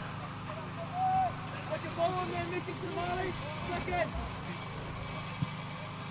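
Distant shouts from footballers on the pitch, short calls about once a second, over a steady low hum. A single short knock comes about five seconds in.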